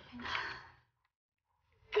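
A woman sighing: one breathy exhale in the first second.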